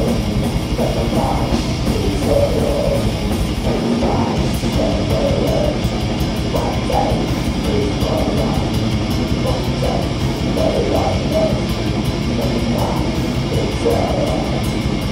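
Live heavy metal band playing loud and without a break: distorted electric guitars and bass over a fast, driving drum kit.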